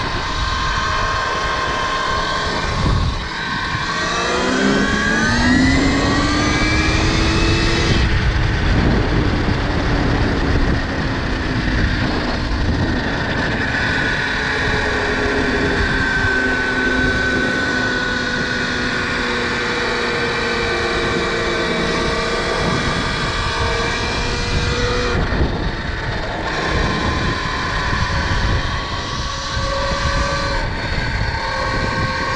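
Electric motor whine of a KTM Freeride E-XC electric dirt bike under way, rising in pitch as it accelerates about four seconds in, then holding and slowly sinking later on. Heavy wind rush on the microphone runs under it.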